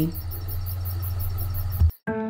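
Outdoor ambience: insects chirping in a fast, even high-pitched pulse over a steady low hum. A short knock near the end, then the sound cuts out.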